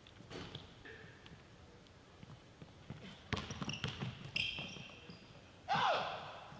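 A basketball dribbled on a hardwood gym floor, with a quick run of three bounces in the middle. Sneakers squeak briefly on the court.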